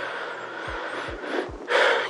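A man draws a sharp breath in near the end, just before he speaks, over a faint steady hiss with a few soft low thumps.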